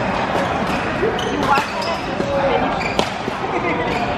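Badminton rally: sharp clicks of rackets striking a shuttlecock, with sneakers squeaking on the court mat as players move.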